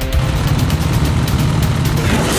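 Several dirt bike engines running together on a start line, a dense low engine sound, with music beneath.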